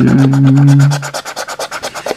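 Rapid, repeated strokes scratching the coating off a paper scratch card. Over the first second a person hums a short, steady low note.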